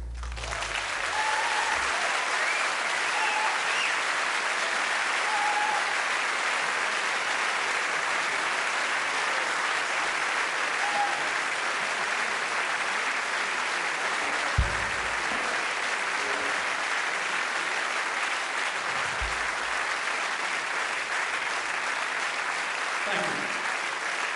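Large concert hall audience applauding steadily, with a few short calls standing out in the first half and a low thump about halfway through; the applause dies away near the end.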